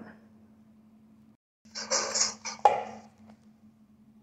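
A small MDF wooden box being handled on a table: a short scraping shuffle about two seconds in, ending in one sharp wooden knock, over a faint steady hum.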